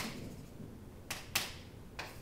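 Chalk striking and scraping on a chalkboard during writing: a few short, sharp taps, two of them close together a little past the middle.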